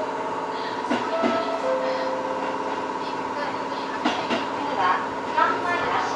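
Tobu 8000-series electric train pulling out of a station, heard from inside the cab, with a steady electrical hum. Wheels click over rail joints in pairs about one second in and again about four seconds in. A voice comes in near the end.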